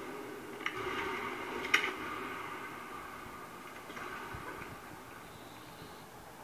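Faint room hum with handling noise from the camera being moved and positioned, including two sharp clicks in the first two seconds.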